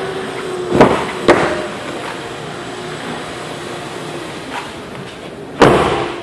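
Two sharp knocks about a second in, then steady room noise, and a heavier thump near the end.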